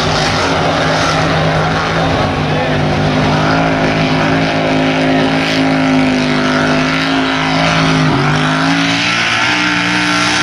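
Modified mud-racing truck's engine running hard down the track at steady high revs; its pitch dips briefly about eight seconds in, then settles a little higher.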